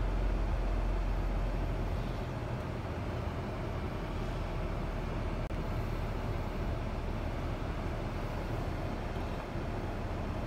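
Parked car running, heard from inside the cabin: a steady hum with a deep rumble that eases about two seconds in.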